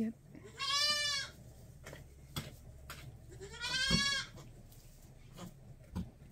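Newborn goat kid bleating twice, two thin, high calls about three seconds apart, each rising slightly and falling away.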